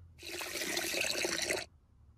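A horse urinating in a cartoon: a splashing stream of liquid onto the floor that runs for about a second and a half, then stops suddenly.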